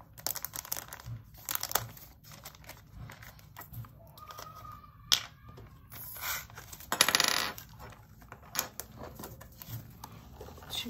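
Small square resin diamond-painting drills rattling in and out of small plastic bottles, with clicks of plastic caps and handling; a dense rattling burst, the loudest sound, comes about seven seconds in.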